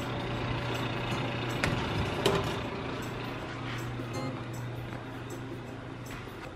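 Steady hum of a kitchen fan, with a few short light clicks about two seconds in as a baking tray is handled on the oven rack.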